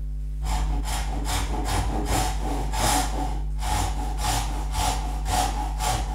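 A thin-kerf Japanese hand saw sawing the sides of box-joint fingers into a small board, cutting down to the knife line. Its even rasping strokes come about two to three a second and begin about half a second in.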